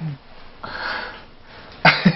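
A person's short breath, lasting about half a second, in a pause between lines of dialogue.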